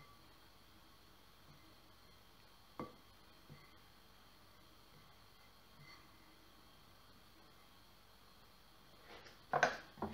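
Quiet stirring of a flour dough with a silicone spatula in a glass mixing bowl. There is a light knock about three seconds in and a few louder knocks of utensil against bowl near the end.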